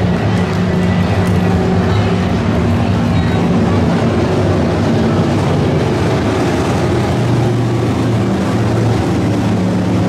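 Hobby stock dirt-track race cars' V8 engines running on the oval, a steady engine drone whose pitch rises and falls a little as the cars circle.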